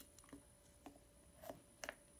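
Faint, scattered clicks from a Bodum travel French press mug as its plunger is pushed down through the lid after steeping, about four light ticks in all, the last two near the end the loudest.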